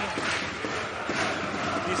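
Basketball being dribbled on a hardwood court, a repeated bouncing, over the steady noise of an arena crowd.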